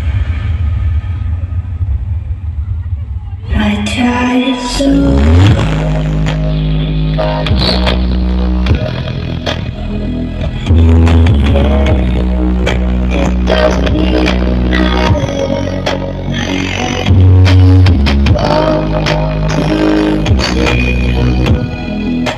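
Music with very heavy bass played loud through a large stacked subwoofer sound system during a sound check. For the first few seconds there is only a steady deep bass note; then the full track comes in over a stepping bass line, with the bass loudest at two points in the middle.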